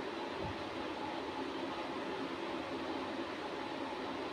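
Steady indoor room noise: an even hiss with a faint low hum, no speech.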